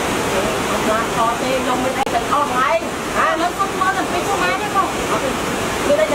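Steady rush of a stream or waterfall, with people's voices talking over it from about a second in.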